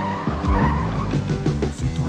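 The song's instrumental accompaniment between sung lines, mixed with a car sound effect of tyres skidding.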